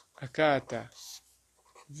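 A man's voice speaks briefly, and a pen scratches on paper as a formula is written out. A short high scratch comes about a second in.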